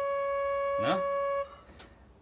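Metal pipe-organ flue pipe sounding one steady note, which stops suddenly about one and a half seconds in. It is a cipher: dust under the pipe's valve stops it from closing, so wind keeps leaking to the pipe and it plays by itself.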